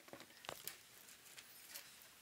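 Near silence, with a few faint small clicks and taps of hands handling tools and cable on a workbench.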